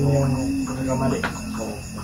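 Crickets chirping in a steady, high, pulsing trill, with a person's drawn-out, wavering voice over them for the first second or so.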